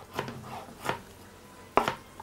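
Kitchen knife cutting through boiled beef shank on a cutting board: soft slicing strokes with three short knocks of the blade on the board, the last near the end.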